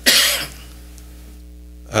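A single short cough, followed by a steady low electrical hum.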